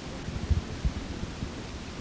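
Steady hiss of an old interview recording, with two soft low thumps about half a second and just under a second in.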